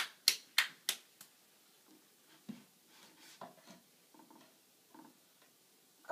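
A toddler clapping his still-wet hands, about three claps a second, stopping a little over a second in; after that only faint, scattered small sounds.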